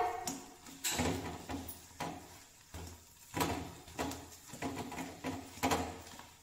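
A metal spatula scraping and knocking against a kadhai as potato masala is stirred, in short irregular strokes.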